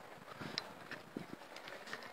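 A few faint, irregular taps over quiet outdoor background noise.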